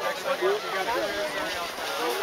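People's voices talking in the background, with no single clear speaker.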